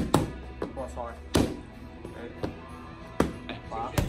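Gloved punches smacking into boxing pads: about five sharp hits, unevenly spaced, over background music.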